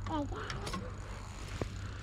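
Brief, indistinct voice sounds in the first second over a steady low rumble, with one sharp click about one and a half seconds in.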